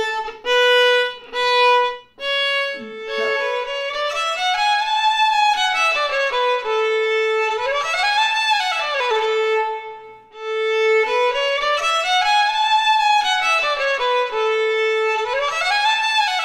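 Violin: a few separate bowed notes on the open A string, then, after about two seconds, a flowing phrase of sliding runs that rise and fall. The phrase plays twice.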